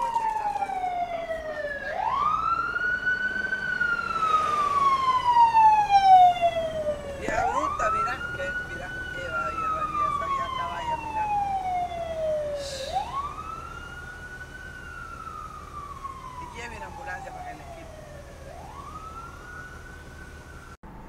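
Ambulance siren on a slow wail, each cycle rising quickly and then falling slowly over about five seconds. It is loudest about six seconds in and fades over the second half as it moves away, heard from inside a car.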